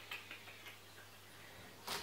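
Quiet room with a steady low hum, a few faint small clicks in the first second, and one sharper click just before the end as an item is handled.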